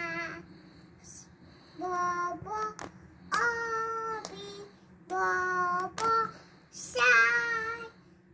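A young girl singing a poem in a sing-song voice, in about four short phrases of drawn-out, held notes with brief pauses between them.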